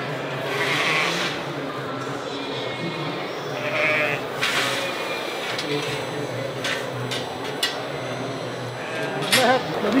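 Sheep bleating a few times, in wavering calls about a second in and again near the middle, over the steady murmur of voices in a large hall. A few sharp clicks follow later on.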